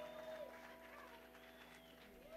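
Near silence: a faint steady hum from the stage, with a few faint short chirps that rise and fall in pitch.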